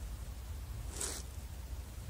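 One short gritty scrape, about a second in, typical of a sneaker sole shifting on a dirt-and-grit metal edge, over a steady low rumble.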